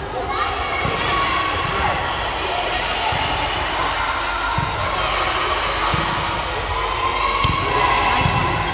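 Volleyball being struck during a rally, with sharp slaps of hands and arms on the ball about five or six times spread through, over players' shouts and calls and sideline chatter.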